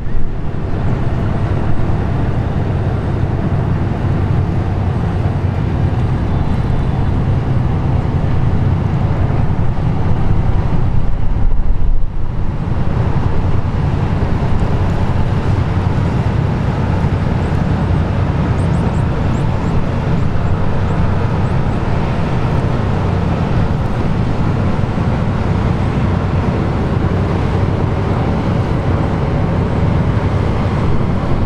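Steady, loud low drone of a coastal tanker's diesel engines as the ship manoeuvres close by, with a brief louder surge about twelve seconds in.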